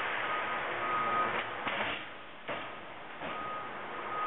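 Cincinnati 12-foot, half-inch-capacity plate shear running and being cycled. Its steady machine noise is broken by a few sharp knocks around the middle. A short, high, steady beep repeats through it, twice near the start and twice near the end.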